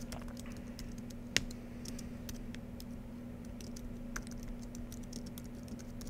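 Typing on a computer keyboard: a run of quick, irregular key clicks, with one louder click about a second and a half in, over a steady low hum.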